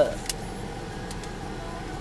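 Steady low hum of a car's interior with a faint thin tone, and a faint brief rustle about a third of a second in.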